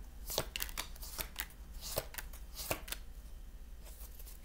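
Tarot cards being shuffled and handled, a run of irregular short card snaps and slaps over about three seconds.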